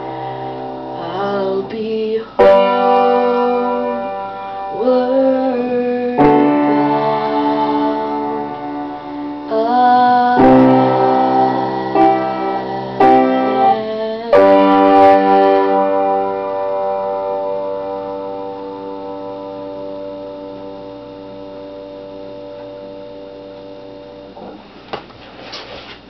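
Upright piano playing slow, sustained chords under a woman's voice singing long, wavering held notes, closing a ballad. A last chord struck about fourteen seconds in rings out and slowly fades, and a few soft knocks come near the end.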